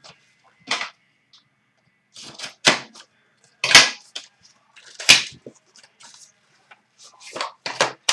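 Hockey card pack being opened by hand: a string of short, sharp crackles and rustles of packaging, about seven spread over the few seconds, with quiet between them.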